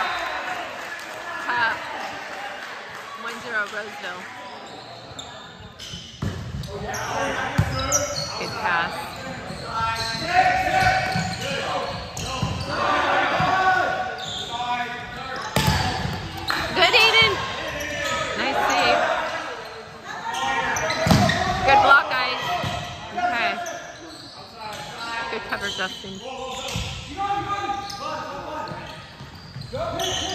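A volleyball rally in an echoing gymnasium: sharp slaps of the ball being hit, repeated through the rally, mixed with players shouting calls to each other.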